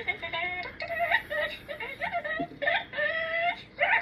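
A person's high-pitched wordless vocalizing: a string of short held notes, several turning upward at the end.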